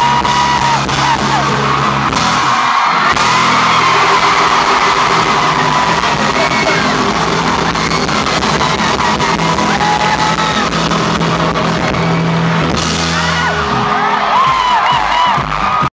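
Live band holding sustained low chords at a loud concert while the crowd cheers, yells and whoops over it. There is a brief drop about three seconds in.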